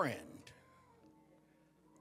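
A man's voice trails off with a falling pitch glide, then pauses. Faint, sustained church keyboard notes hold underneath.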